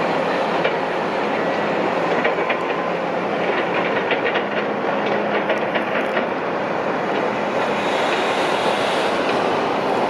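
Steady heavy-machinery noise, with a run of quick rattling clicks between about two and six seconds in.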